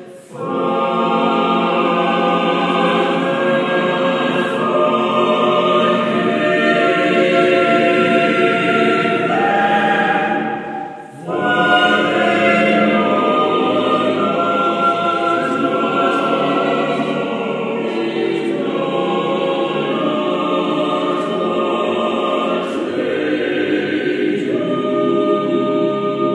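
Mixed chamber choir singing in several parts, the words "Father, forgive them, for they know not what they do", with a short break for breath about eleven seconds in.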